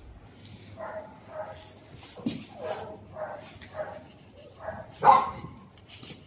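An Australian Shepherd barking in a run of short, high-pitched barks, about two a second, the loudest about five seconds in.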